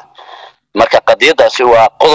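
Speech: a person talking, after a brief pause at the start.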